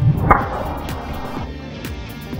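A golf driver striking the ball: a dull thud, then a swooshing hiss that fades over about a second, over background music.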